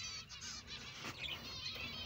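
A colony of finches calling: many short, high chirps overlapping one another.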